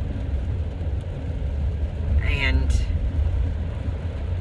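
A steady low rumble, with a brief vocal sound about two and a half seconds in.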